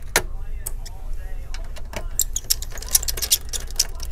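Irregular small clicks and taps of a screwdriver backing screws out of a laptop's metal bottom cover, with light knocks as the hands handle the case.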